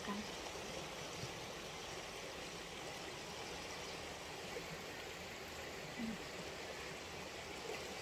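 Steady rushing of a river flowing over rocks.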